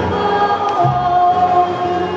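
Portuguese popular folk-dance music: a group of voices singing over long held instrumental notes and a pulsing low part.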